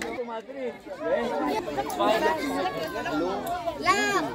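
Several people talking at once: overlapping chatter of voices, with no clear words.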